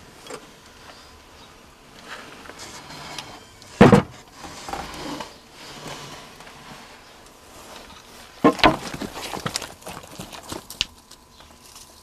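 Two loud knocks, one about four seconds in and one about eight and a half seconds in, the second followed by a run of clicks and rustling for about two seconds.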